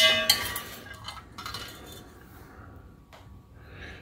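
Stripped CDs and the rod they hang on clinking against a glass beaker as the discs are handled for rinsing. The ringing clinks stop about half a second in, and a couple of faint single clicks follow.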